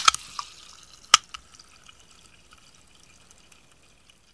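Liquid fizzing and dripping with scattered small clicks and one sharp click about a second in, fading away to near silence: the sound of a freshly opened carbonated drink.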